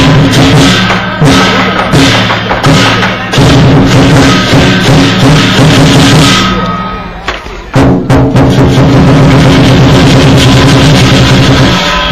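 Lion dance drum and cymbal accompaniment: a large drum beating fast and loud under clashing cymbals. It tails off about six and a half seconds in and comes back suddenly at full strength about a second later.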